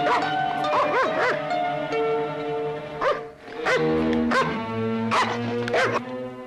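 A Doberman barking again and again, in short sharp barks: a quick cluster in the first second and a half, then another run from about three seconds in. Film score music plays underneath.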